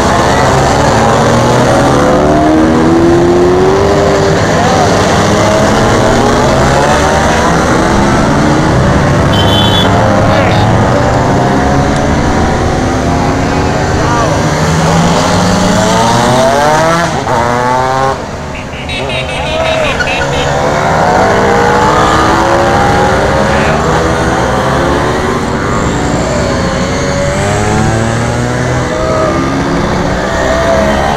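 A stream of vintage two-stroke scooters climbing a steep hill one after another, several engines running under load at once as they pass close by, their pitches rising and falling. The sound drops briefly a little past the middle.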